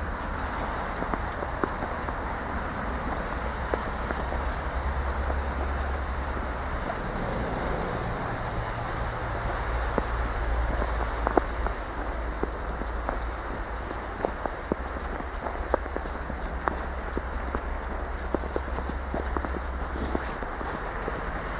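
Footsteps crunching and squeaking irregularly in snow, over a steady low rumble of city traffic.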